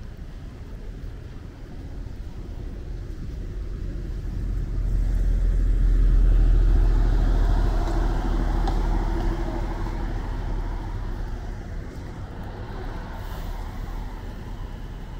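A pickup truck driving past, its engine and tyre noise swelling to a peak about six seconds in, then fading as it pulls away.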